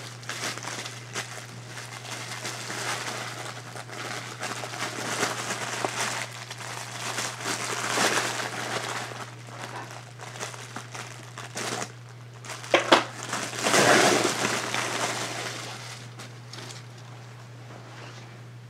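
Plastic packaging crinkling and rustling as it is handled, in irregular bursts, loudest about 8 and 14 seconds in, over a steady low hum.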